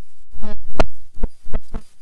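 A brief bit of voice, then four or five dull, loud thumps at uneven intervals over the next second and a half, like knocks or bumps picked up close by a studio microphone.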